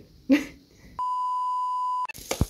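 A brief vocal sound, then a steady electronic beep tone lasting about a second that cuts off abruptly.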